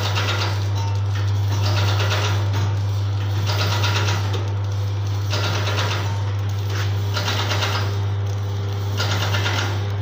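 Vertical form-fill-seal pouch packing machine running, making small sachets. A steady low hum lies under a rattling mechanical cycle that repeats about every one and a half seconds.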